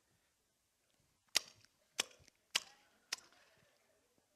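Four sharp mouth clicks about half a second apart, lips smacking close to the microphone to mimic someone chewing popcorn noisily.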